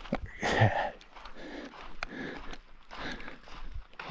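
A hiker's footsteps scuffing on a rocky dirt trail at walking pace, with a short vocal breath about half a second in.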